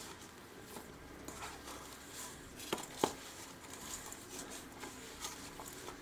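Faint squishing and patting of rice-flour dough being kneaded by hand in a steel bowl, with two sharp clicks close together about halfway through.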